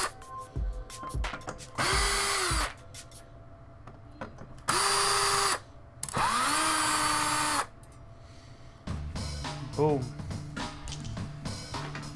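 Power screwdriver running in three short bursts of about a second each, the motor spinning up and holding speed each time, as screws are backed out of the miner's front plate. Small clicks fall between the bursts, and background music comes in near the end.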